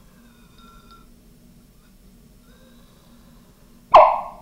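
Hydrogen gas in a test tube igniting at a candle flame: one sharp, loud pop near the end with a brief ringing tail, the positive test showing that the sodium–water reaction gives off hydrogen. Before it there is only a faint low hum.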